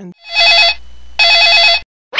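Telephone ringing twice with an electronic trilling ring, each ring about half a second long with a short pause between.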